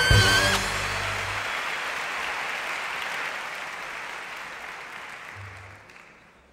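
An orchestra's final held chord cuts off about half a second in. Audience applause follows and slowly fades away.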